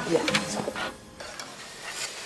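Faint clinking and stirring of pots and utensils at a steel kitchen range, with a few light clicks.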